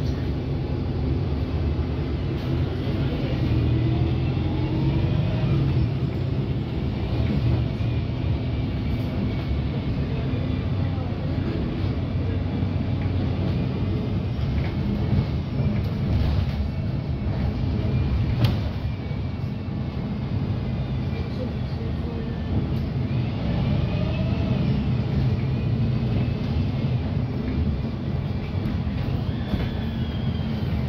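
Steady low engine rumble and road noise heard from inside a single-deck Alexander Dennis Enviro200 MMC bus, with a couple of sharp knocks past the halfway point.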